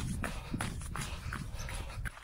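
A runner's footsteps on a gravel track, about two to three a second, over a low rumble of wind on the microphone.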